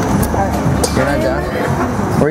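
Steady low street-traffic rumble with brief, indistinct voices over it.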